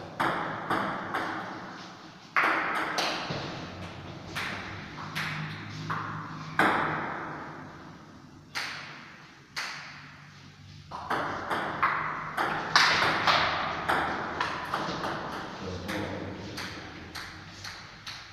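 Table tennis rallies: a celluloid ball clicking off rubber rackets and a Stiga table in quick succession, each hit ringing on in a reverberant room, with short lulls between points.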